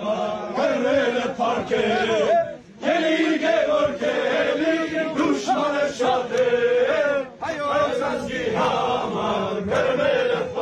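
A group of men singing a traditional Armenian dance song together in a chant-like style, holding long wavering notes, with short breaks about two and a half and seven seconds in.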